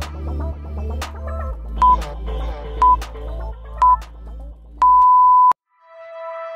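Workout interval timer counting down over background music: three short high beeps a second apart, then one longer beep marking the start of the next exercise. The music cuts out with the long beep.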